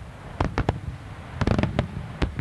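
Daytime fireworks: aerial shells bursting overhead in a string of sharp bangs. There are three separate reports in the first second, then a rapid cluster of cracks a little past halfway, followed by one more bang.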